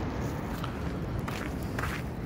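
Footsteps of a person walking, three steps about half a second apart, over the low steady rumble of a jet airliner that has just passed overhead.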